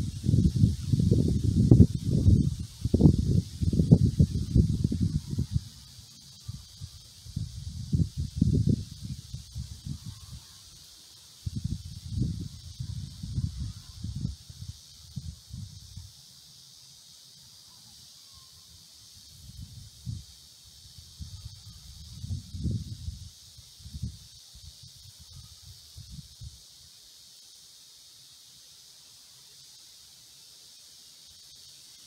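Wind buffeting the microphone in irregular gusts, heaviest in the first few seconds and again in the middle, then dying away near the end. Under it runs a steady high insect hiss.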